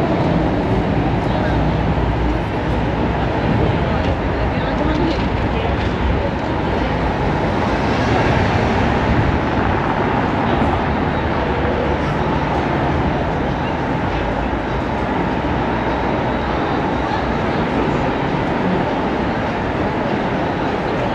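Busy city street ambience: a steady mix of traffic noise and passers-by talking.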